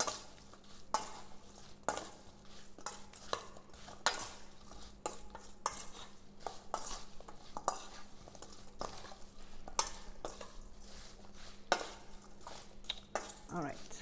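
A metal spoon stirring sliced apples in a stainless steel mixing bowl, with irregular clinks and scrapes of the spoon against the bowl, about one or two a second.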